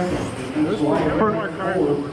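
Men's voices talking, not clear enough to make out words.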